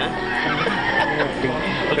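People laughing, a wavering high-pitched laugh.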